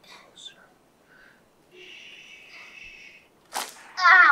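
A soft steady hiss, then a single sharp click about three and a half seconds in, from a chiropractic adjustment thrust on the lower back and pelvis of a child lying face down on a Gonstead table.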